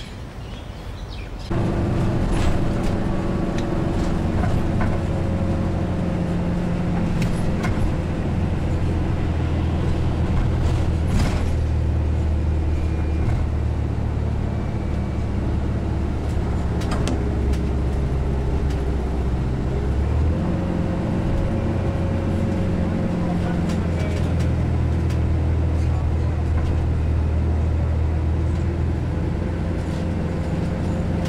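Steady engine and road hum heard from inside a moving vehicle's cabin. It starts abruptly about a second and a half in, and the engine note shifts slightly about two-thirds of the way through.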